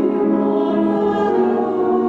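Small mixed choir of men and women singing, holding long sustained notes.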